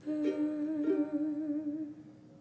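A woman's voice holding a long final note with vibrato over ukulele chords, two chords struck in the first second; the song ends and the sound fades out near the end.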